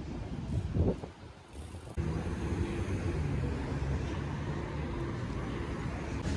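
Road traffic on a city street: a steady low rumble of passing vehicles. There is a brief louder burst just under a second in, and the sound changes abruptly about two seconds in.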